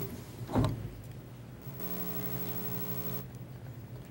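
A steady low electrical hum with many even overtones. It grows a little louder, with a hiss over it, for about a second and a half in the middle. A single knock comes about half a second in.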